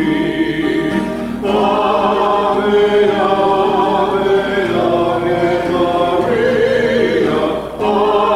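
A choir singing a slow hymn in several voices, long held notes moving from phrase to phrase, with a short break in the line near the end.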